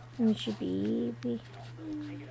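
A person's wordless voice: three short hums or coos, the longest about half a second, wavering in pitch, over a steady low electrical hum.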